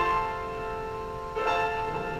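Grand piano played slowly. A chord struck at the start rings and fades, and a new chord comes in about one and a half seconds in.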